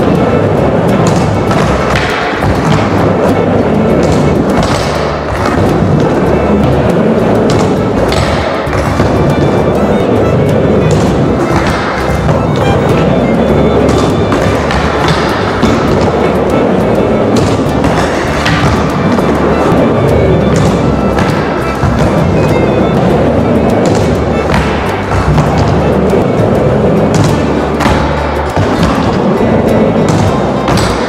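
Background music running throughout over the sound of a skateboard riding a plywood mini ramp, its wheels rolling with occasional thuds of the board landing tricks.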